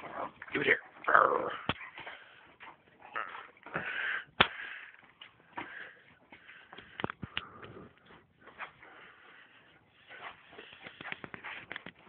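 Dogs (an Akita and a German Shepherd) at play make irregular short noises among scuffles and clicks, busiest in the first couple of seconds, with a sharp click about four seconds in.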